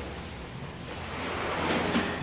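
Steady background noise of a mechanic's workshop, a featureless hiss that slowly grows louder toward the end.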